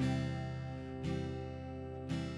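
Acoustic guitar strummed in sustained chords, with a new chord struck at the start and again about a second in.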